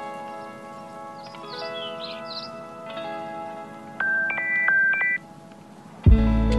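Soft background music with plucked, ringing notes and a few high chirps, then about four seconds in a smartphone alarm tone sounds for just over a second, louder than the music, stepping between two pitches and then cutting off.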